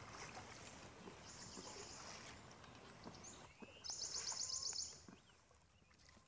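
Faint outdoor ambience with a high, rapid trill from a wild animal, heard twice: softly about a second in, then louder for about a second around four seconds in. The sound then cuts off to silence.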